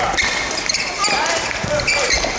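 Badminton doubles rally on an indoor court: shoes squeaking on the court floor several times, with footfall thuds and sharp racket strikes on the shuttlecock.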